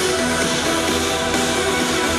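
Electronic dance music from a live DJ set playing loudly over a festival sound system, with a steady deep bass and held chords.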